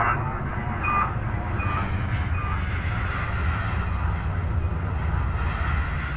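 Sound-effect drone for an animated space scene: a steady low rumble with a few faint, short electronic beeps in the first couple of seconds.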